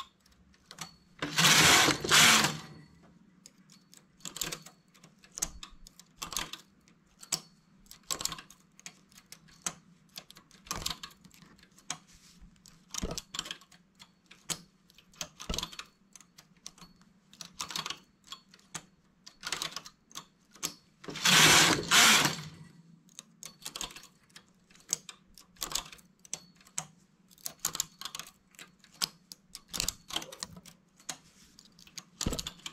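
Light metallic clicks of a two-prong transfer tool lifting stitches and setting them onto the latch needles of a domestic knitting machine, stitch by stitch. Twice, about a second in and about twenty-one seconds in, a louder rasp of about a second and a half as the carriage is pushed across the needle bed to knit a row.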